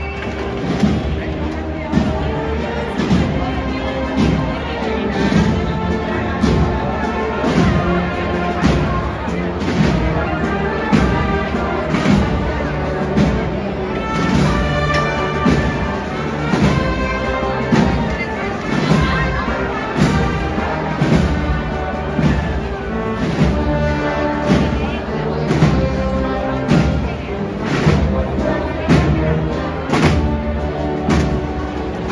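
Spanish wind band of brass, woodwinds and drums playing a processional march, with a steady drum beat under the melody.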